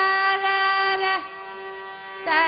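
Carnatic music: a long held note rich in overtones slides down and stops a little past a second in, leaving a quieter steady drone underneath.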